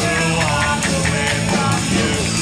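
Live rock-style worship song: a man singing the lead over electric guitars, with a steady beat of about four strokes a second.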